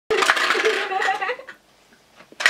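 VTech Sort & Discover Drum toy playing a short electronic tune through its small speaker, with clicking and rattling of its plastic shape pieces as the drum is pushed. It cuts off about a second and a half in.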